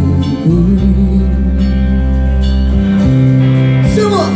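Live rock band playing through a PA: electric guitar and bass guitar with long held bass notes, and a male singer's voice over them.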